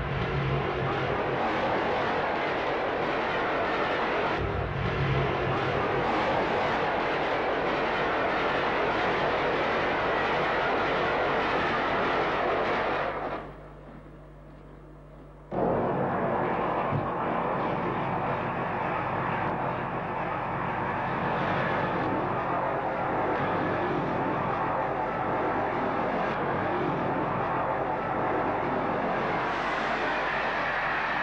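Steady, dense running noise of a diesel train passing. It cuts out for about two seconds around the middle, then comes back abruptly.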